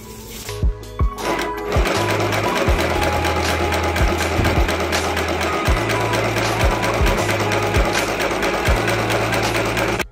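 Small electric sewing machine running steadily, its needle stitching rapidly, from about two seconds in until it cuts off at the end. Background music plays underneath.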